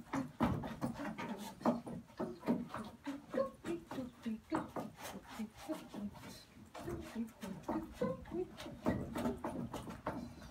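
A woman humming or scat-singing short 'do' notes while dancing, with her boot heels knocking on a wooden deck many times.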